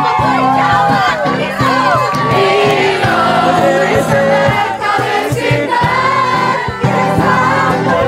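Music with many voices singing together over a steady beat.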